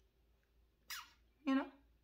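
Mostly quiet room tone. About a second in comes a short hiss, like a breath, then a brief voiced sound from the woman, like the start of a word.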